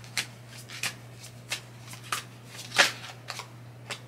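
Tarot cards being shuffled and handled by hand: a scatter of light card slaps and flicks, one louder one near three seconds in.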